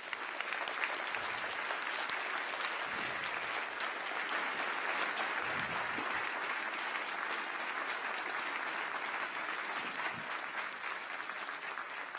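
Large audience applauding, a dense, steady clapping that eases slightly near the end.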